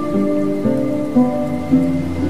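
Slow instrumental background music, its held notes stepping to a new pitch about every half second, over a steady hiss of rain sound.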